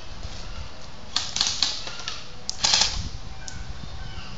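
Airsoft rifles firing two short bursts of rapid clicking shots, about a second in and a louder one about two and a half seconds in.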